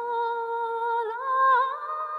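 A woman's voice holding one long wordless sung note in a Tibetan song, with a small rising turn and a waver about a second in.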